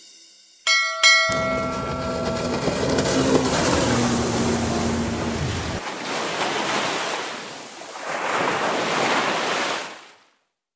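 Intro sound effects: a bell struck twice and ringing out, then a low steady droning tone for about four seconds, over the sound of sea waves washing. The waves fade, swell again near the end and cut off suddenly.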